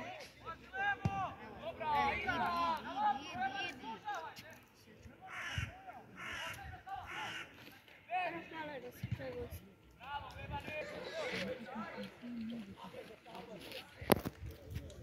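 People's voices calling out and talking in two stretches, with a quieter gap in the middle.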